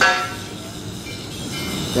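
Roadside traffic rumble with a short, loud vehicle horn toot right at the start that fades within about half a second.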